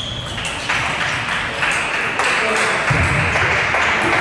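Table tennis rally: the ball clicking sharply off paddles and the table in quick succession, over a steady background hiss.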